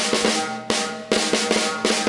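Snare drum played with wooden sticks in flam taps: louder accented strokes about every 0.4 s with quieter taps between them, the drum head ringing after each hit.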